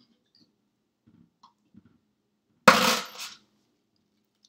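A hard-boiled egg rapped sharply once on a hard edge to crack its shell, a loud crack about two-thirds of the way in followed by a brief crackle of breaking shell. Faint handling taps come before it.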